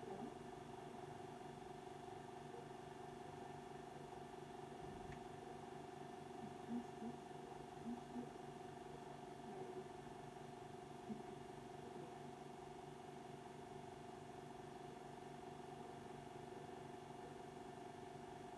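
Faint steady background hum made of several low tones, with a few soft brief sounds about halfway through.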